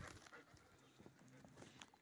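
Near silence outdoors, with a few faint, short ticks and taps.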